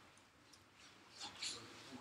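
Near silence with faint, distant speech: an audience member's question heard off-microphone in a lecture hall.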